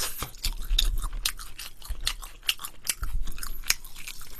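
A person chewing and crunching a piece of Korean sauced fried chicken (yangnyeom chicken) close to the microphone, in a run of many short crunches and clicks.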